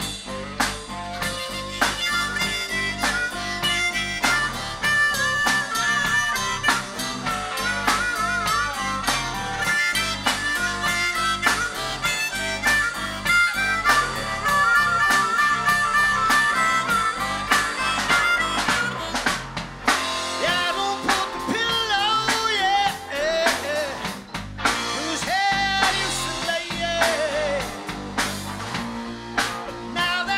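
Live blues-rock band in an instrumental break: a harmonica solo with bending, wavering notes over electric guitar, bass guitar and drum kit.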